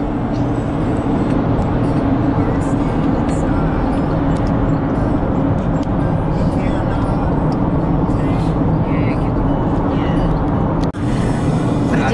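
Steady road and engine noise heard inside a passenger van moving at highway speed, with faint voices under it.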